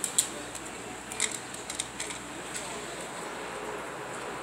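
Hard carrot slices dropped into a plastic dog bowl, clattering as a string of sharp clicks. The loudest click comes just after the start, with more over the next two seconds.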